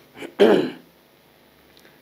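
A man clearing his throat once, briefly, about half a second in, just after a small mouth click.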